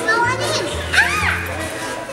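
Young children's excited voices, with a high rising-and-falling squeal about a second in, over background music with a steady bass line.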